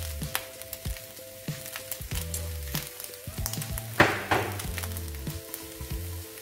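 Fried rice sizzling in a hot steel wok, with scattered crackles and pops and a louder burst of sizzling about four seconds in.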